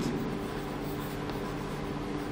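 Chalk writing on a chalkboard: soft scratching as a word is written out.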